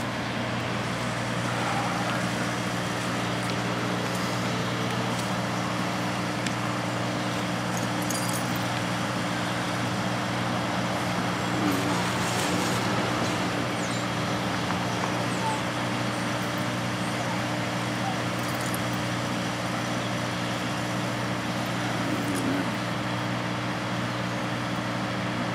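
A steady low mechanical hum with a constant drone, over a wash of outdoor background noise.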